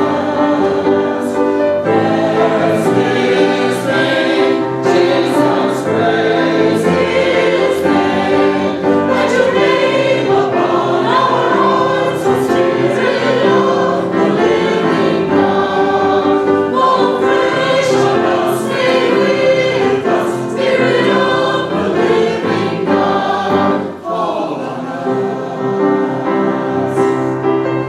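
A small mixed choir of men's and women's voices singing together without a break.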